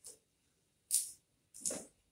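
Flower stems and leaves rustling as they are handled and set into the arrangement: three short rustles, the loudest about a second in.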